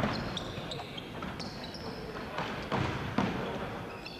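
Ball kicks and bounces on a wooden sports-hall floor during a futsal game, several sharp knocks with the strongest two near the end, ringing in the hall, over players' shouts and short high squeaks.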